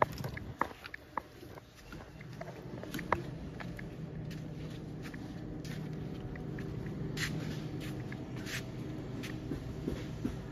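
Shop interior ambience: a steady low hum with scattered light clicks and knocks in the first few seconds, and a few short rustles near the end.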